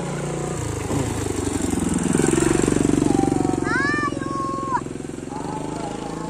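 A small motorcycle engine passing close by, growing louder to a peak about halfway through and then fading. A young child's short high-pitched call comes in about four seconds in.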